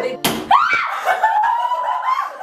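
A young woman screaming in fright: one long, high scream that starts about half a second in, climbs, then holds. It comes just after a short sharp smack.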